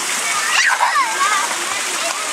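Steady splashing and pouring of water in a shallow children's splash pool with fountain features, with high children's voices calling out around half a second to a second in.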